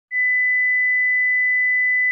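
A single steady electronic tone, a high pure beep at about 2 kHz held for about two seconds.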